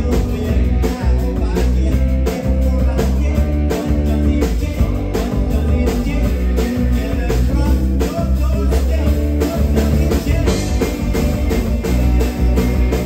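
Live rock band playing a song: electric guitar, electric bass and drum kit, with sung vocals.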